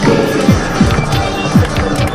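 Background music with a steady beat: deep drum hits that drop in pitch, about two and a half per second, with light ticks above.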